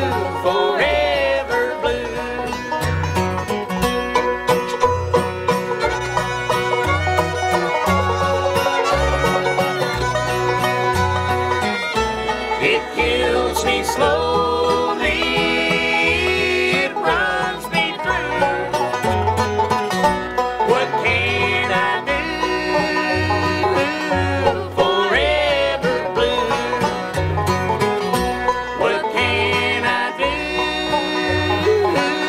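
Bluegrass band playing an instrumental break: banjo and guitar picking with a bowed fiddle line that slides between notes, over a bass alternating notes on a steady beat.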